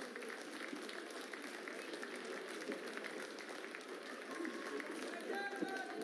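Spectators in a fencing hall chattering and applauding, with scattered individual claps, as the bout is decided at 15–14.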